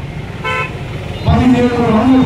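A single short vehicle-horn toot about half a second in, one steady note lasting about a quarter of a second. A man's voice over a microphone and PA follows near the end.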